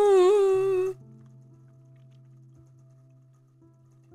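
A woman's unaccompanied voice holds the last wavering note of a Vietnamese lullaby (hát ru) line and breaks off about a second in. Soft background music with a sustained low note carries on quietly after it.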